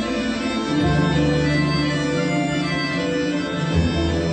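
Russian folk instrument orchestra playing an instrumental introduction: sustained chords, with the bass note changing about a second in and again near the end.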